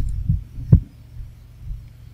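Low hum with soft low thumps, and a single sharp mouse click a little under a second in.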